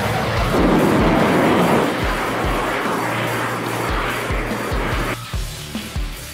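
Eurofighter Typhoon's twin EJ200 turbofan engines giving a loud, steady jet noise over background music with a regular drum beat. The jet noise cuts off abruptly about five seconds in, leaving the music.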